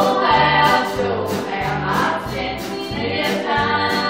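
A gospel song: singing over an accompaniment with a steady beat and a repeating bass line.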